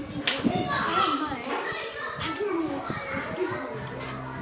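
Young voices speaking heatedly, with a single sharp click just after the start; background music comes in near the end.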